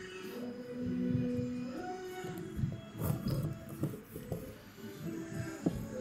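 A cappella vocal music: sung voices hold long notes that step from one pitch to the next, with no instruments. A few short knocks are heard over it.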